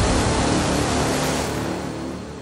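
Outro logo sound effect: a broad rushing whoosh over a deep rumble, slowly fading away.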